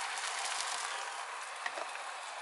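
Liquid egg white sizzling in a hot non-stick omelette pan as more is poured in: a steady hiss.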